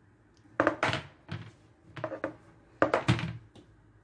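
A dark metal baking tray filled with cake batter knocked down against the worktop, a run of about eight dull thuds, mostly in quick pairs, settling the batter in the tray.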